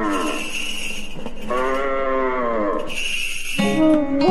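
A cow mooing twice in long calls that fall away in pitch, with bells jingling over them. Plucked-string music starts near the end.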